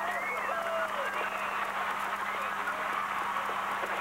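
Sound-effect bed of a TV juice commercial: a steady rushing noise with scattered short gliding squeals over it, and a steady low hum underneath.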